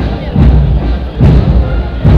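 Band music for the Echternach dancing procession: the traditional procession tune with a heavy, regular low beat a little over twice a second.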